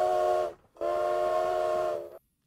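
Recording of a steam train whistle played back from a sample audio file: two steady blasts. The first ends about half a second in, and the second lasts about a second and a half.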